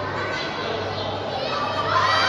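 Wrestling audience chattering and calling out, with children's voices among them.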